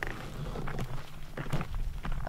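Footsteps on stony desert dirt: a few uneven steps as two people move around a rock.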